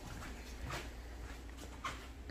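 Footsteps on a hard floor: three short scuffs over a steady low hum.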